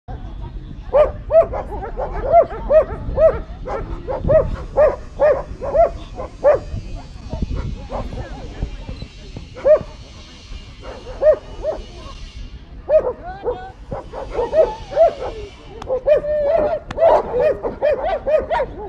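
German Shepherd barking repeatedly, at about two barks a second. It pauses for a couple of seconds midway, then barks again faster and more densely near the end, while working a protection helper.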